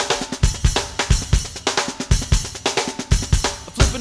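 Drum kit playing a busy rock groove on its own: kick drum, snare and hi-hat hits in quick succession, the opening bars of a studio-recorded funk-rock song.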